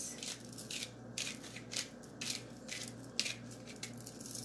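A handheld spice grinder of mixed seasoning being twisted over a frying pan. It gives a quick, uneven run of short, sharp grinding strokes, several a second, as the spice falls onto frying eggs.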